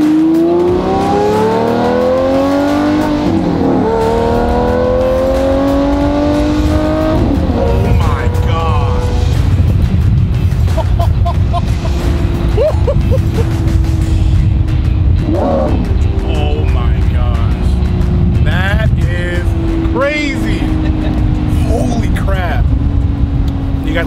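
Mid-engined supercar's engine heard from inside the cabin, accelerating hard. Its pitch climbs, drops at an upshift about three seconds in, and climbs again to a second shift about seven seconds in. It then settles into a steady, slowly falling drone over a deep rumble as the car cruises.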